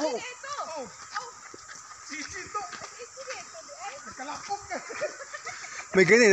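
Several people's voices talking and calling out at a distance, faint and overlapping.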